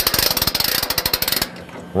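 Hand crank of the New Holland Roll-Belt 450 round baler's mechanical pickup lift being turned: a rapid run of clicks from the crank mechanism that stops about one and a half seconds in.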